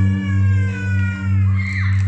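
A live band's closing chord held and ringing out: a deep low note sustained under higher notes that slowly slide down in pitch as the song ends. Near the end comes a short high whoop.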